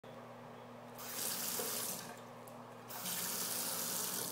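Bathroom sink faucet running, water splashing into the basin in two spells of about a second each as the tap is opened and shut.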